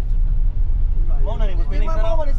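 Steady low rumble of a moving vehicle heard from inside its cabin, engine and road noise together. Voices talk over it in the second half.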